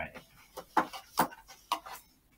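Three short, sharp clicks about half a second apart from buttons and keys being pressed on a desktop computer setup while it is switched on.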